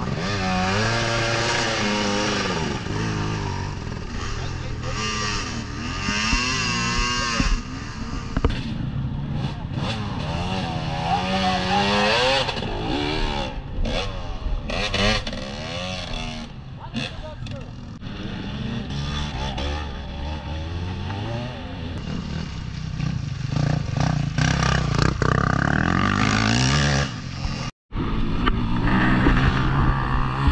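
Enduro motorcycle engines revving up and dropping back again and again as the bikes fight for grip in deep mud, a bike stuck with its rear wheel spinning while it is pushed free. Shouting voices come through over the engines, and the sound cuts out for an instant near the end.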